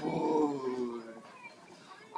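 A dog's long, drawn-out moan that falls slowly in pitch, lasting about a second as it is hugged close.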